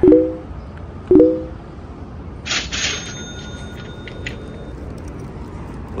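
Short two-tone beeps, twice about a second apart, each starting sharply and fading quickly, then a brief hiss near the middle over steady street background.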